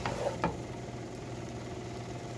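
Pancit noodles being tossed in a pot with a wooden spoon and a white spatula: two light knocks of the utensils about half a second apart, then a low steady hum in the background.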